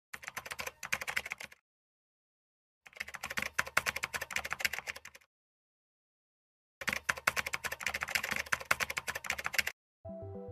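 Rapid keyboard typing clicks in three bursts of about one and a half, two and a half and three seconds, with dead silence between them.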